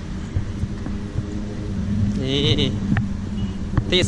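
Steady low background rumble, with a man saying one short word about halfway through.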